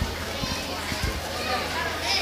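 Children's voices chattering in the background of a hall, over a steady low hum, with a few soft low thumps.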